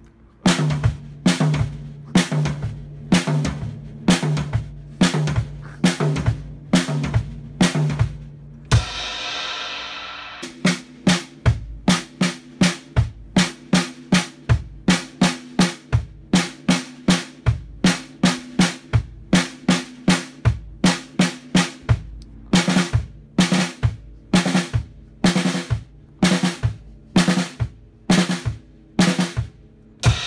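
Acoustic drum kit played in a steady beat of sharp drum strokes, with a cymbal crash ringing out about nine seconds in and another right at the end.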